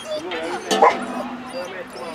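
A dog barking in short, high yips, the loudest a little under a second in.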